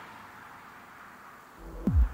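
Soft, fading road and tyre noise of a car driving away. About a second and a half in, electronic outro music starts with a deep bass hit and a falling sweep.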